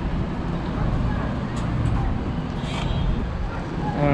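Steady low rumble and hiss of background noise, with a few faint ticks.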